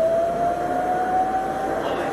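Abrasive cut-off saw cutting a metal rod, heard through the playback speakers. The motor gives a steady whine over the grinding noise, slowly rising in pitch.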